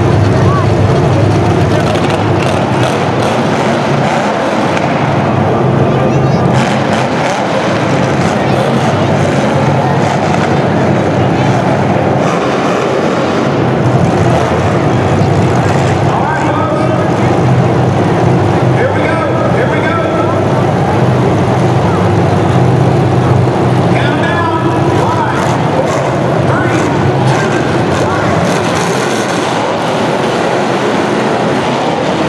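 Demolition derby car engines running loudly and steadily as the cars push against each other.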